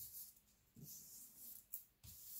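Faint rustling of hands smoothing and pressing construction paper flat onto glued paper.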